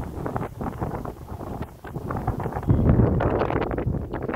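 Wind buffeting the microphone: an uneven, gusty low rumble that grows louder about three seconds in.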